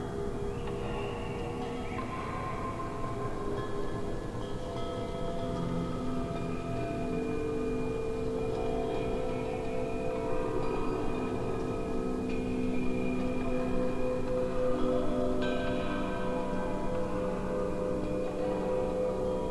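Electroacoustic music made from slowed-down, layered recordings of a bamboo wind chime and a metal wind chime: many overlapping chime tones ring on and slowly die away. New notes enter every few seconds, with mild dissonance between some of them.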